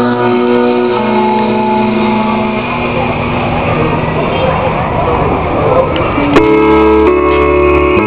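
Live band music played through a loud outdoor PA: held chords for the first few seconds give way to a stretch of crowd noise. About six seconds in, a keyboard comes in with loud sustained chords.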